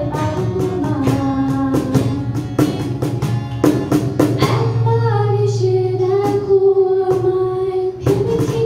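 Woman singing a Bengali song into a microphone, holding a long note in the second half, accompanied by strummed acoustic guitar and steady cajón beats.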